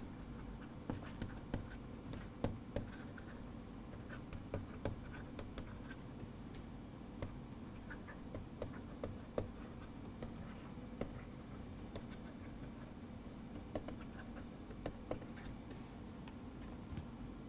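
Faint stylus writing on a tablet: irregular small taps and scratches as words are handwritten, over a low steady room hum.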